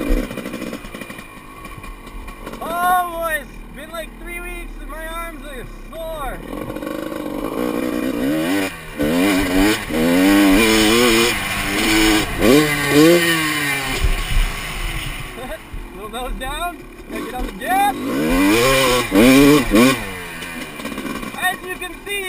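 Dirt bike engine revving up and falling back again and again as the rider works the throttle and shifts while riding the track, with wind rush on a helmet-mounted camera.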